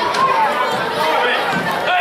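Overlapping, indistinct chatter and calls from spectators in a gymnasium crowd, continuing steadily.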